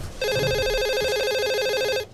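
Electronic telephone ringing: a rapid warbling trill between two tones that starts a moment in and cuts off suddenly at the end.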